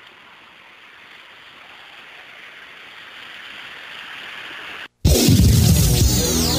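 Steady rush of floodwater, a noisy hiss that grows gradually louder, cut off about five seconds in by loud electronic music with sweeping synthesizer tones.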